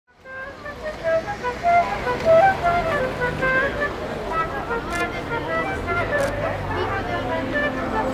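Solo flute playing a melody in quick, short notes, fading in at the start, over traffic noise and the murmur of voices.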